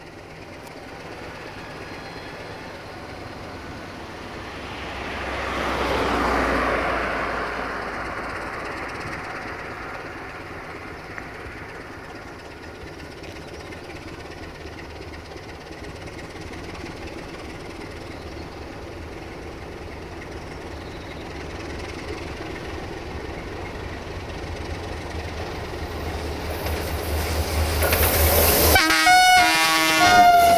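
Sulzer 12LDA28 diesel engine of a 060-DA (LDE2100) locomotive running under load as it hauls a freight train slowly toward the listener, with a steady low rumble that swells about six seconds in and builds again near the end. In the last seconds a passing passenger train's wheels clack rhythmically over rail joints and a locomotive horn sounds, the loudest part.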